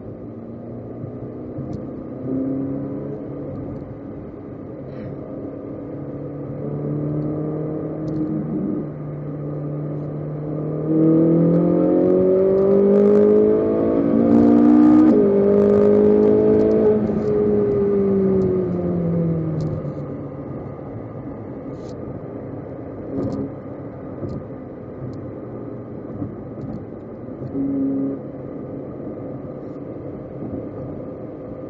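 Ferrari 458 Italia's V8 engine running steadily, then accelerating hard about ten seconds in, its pitch rising to a peak; after a break in pitch the engine note falls away as the car slows, and it returns to quieter steady running.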